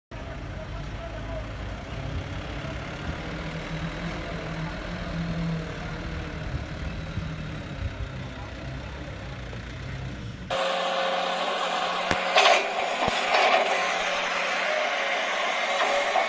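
A laden Mitsubishi Fuso dump truck's diesel engine running with a steady low rumble. About ten seconds in, the sound cuts to a brighter, higher background with a few sharp clicks.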